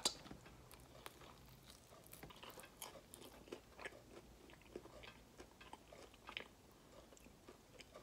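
Faint chewing of a crunchy, sauce-coated fried chicken wing, with soft, scattered clicks and crunches from the mouth.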